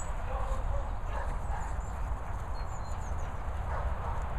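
Low wind rumble on the microphone over the soft thudding of dogs' paws running on grass, with a few faint high swallow twitters about two and a half seconds in.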